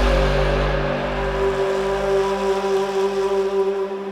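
Electronic music: a sustained synth chord from the intro of a hardstyle track holds several steady tones, while its deep bass and airy hiss fade away.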